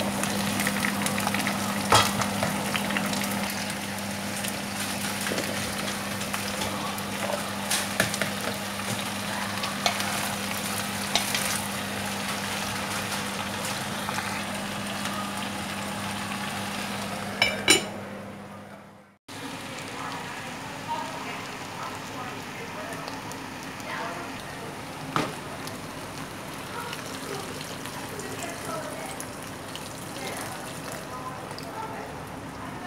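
Diced onion, carrot and potato sizzling in oil in an enamelled cast-iron pot while being stirred, with occasional sharp clicks of the utensil against the pot and a steady low hum underneath. About 19 s in, the sound fades out and cuts, then quieter sizzling and stirring resume without the hum.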